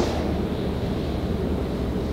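Room tone in a pause between spoken sentences: a steady, even hiss with a low hum underneath, no distinct events.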